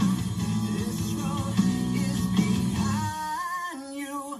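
A song with singing over guitar, played on an under-cabinet kitchen radio. About three seconds in, the low bass part drops out, leaving the voice and the higher instruments.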